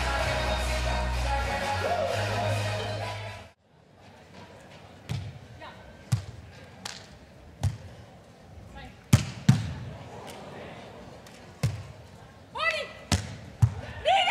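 Background music with a low beat that stops about three and a half seconds in. Then come the hand-on-ball hits of a beach volleyball rally: sharp single smacks of sets, digs and spikes about a second or two apart, the loudest two close together about nine seconds in.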